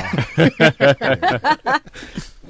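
Laughter in a quick run of short bursts, about five a second, that dies away near the end.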